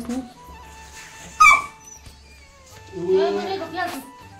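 Background music with a steady low beat. There is a short, loud, high-pitched cry about a second and a half in, and a voice near the end.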